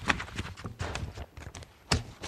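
Paper being handled close to a desk microphone: irregular rustling with knocks and taps against the desk, the loudest just after the start and near the end.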